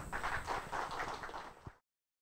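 Audience applauding at the close of a lecture, the claps thinning out and then cut off abruptly to silence near the end.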